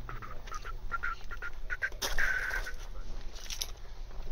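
Birds calling: a quick series of short chirps, then a longer, harsher call about two seconds in, over a steady low rumble.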